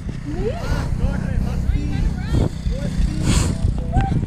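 Indistinct voices of people around, short snatches of talk and calls, over a steady low rumble of wind buffeting a body-worn camera's microphone. There is a brief noisy burst a little past three seconds in.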